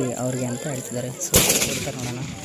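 A single gunshot about halfway through: one sharp, loud blast from a gun fired out over a field, leaving a cloud of white smoke. Men's voices talk around it.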